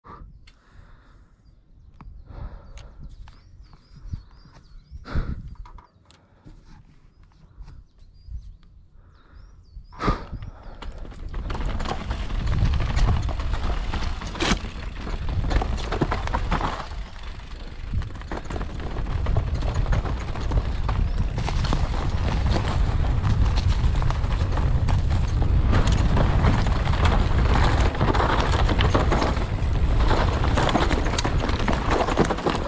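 Downhill mountain bike ridden down a dirt forest trail, heard from a helmet or chest camera. The first ten seconds are quieter, with scattered knocks and rattles of the bike over roots and bumps. From about ten seconds in, a loud, continuous rush of wind and tyre noise builds as the bike gathers speed, with the frame and chain rattling through it.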